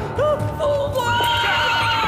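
A horse whinnies, a long call with a shaky, wavering pitch starting about a second in, preceded by a shorter cry, over dramatic background music.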